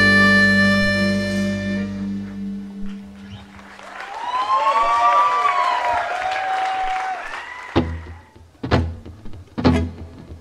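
A blues band's last chord rings on and fades away over the first few seconds, followed by a few seconds of high sliding tones. Near the end the next song starts with sharp, bass-heavy strokes about once a second from the guitars, bass and drums.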